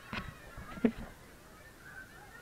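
Two short splashes of water in a shallow pool, about a second apart, over the faint chatter and squeals of many children's voices.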